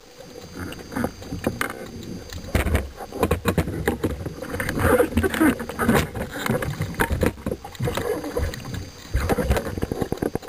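Water rushing and churning over an underwater camera on a speargun as the diver swims, with many irregular clicks and knocks.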